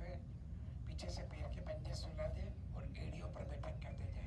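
Indistinct speech, too low and unclear for words to be made out, over a steady low background noise.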